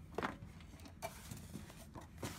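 Faint handling noise and light knocks as a metal tin lunch box is lifted out of a cardboard box and turned over, with one sharp knock about a second in and another near the end.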